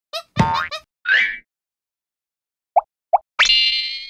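Cartoon sound effects: a quick series of short pitched pops, some sliding up in pitch, then two brief blips and a bright rising, ringing magical chime about three and a half seconds in.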